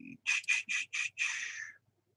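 A quick run of five short, high-pitched chirps, about three a second, the last one drawn out a little longer before it stops.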